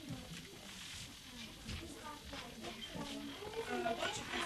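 Indistinct voices of people talking quietly, with a few faint clicks.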